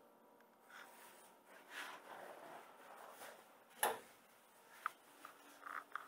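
Quiet handling of a metal baking tray as it is slid onto a proofer cabinet's rack, then a single sharp knock about four seconds in as the proofer door is shut, followed by a few lighter clicks.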